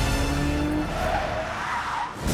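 Tyres squealing as a silver Aston Martin DB5 slides sideways through a turn, with car noise under trailer music. The squeal comes in about a second in and is loudest near the end.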